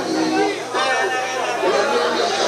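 Several people talking at once: overlapping background chatter.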